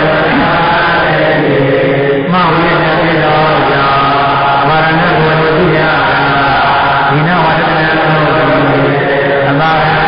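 A man's voice chanting a Pali grammar text in long, held tones that step up and down, with a short break about two seconds in.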